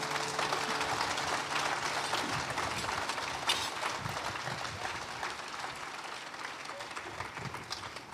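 Audience applauding after the music ends, a dense patter of clapping that slowly dies down.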